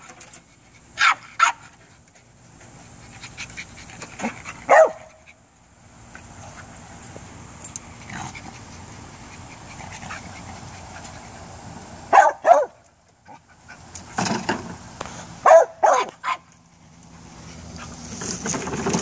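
A small terrier barking in short, sharp bursts in several clusters: two barks about a second in, a couple around four to five seconds, a pair around twelve seconds, and a quick run near the end. These are the excited barks of a dog hunting a lizard hidden in a junk pile.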